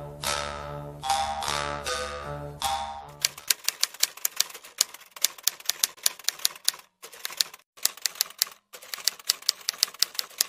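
Struck, fading musical notes end about three seconds in. A rapid, uneven run of typewriter keystroke clacks follows, broken by a few short pauses.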